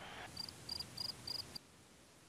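Cricket chirping outdoors: four short, high chirps about a third of a second apart, stopping about one and a half seconds in.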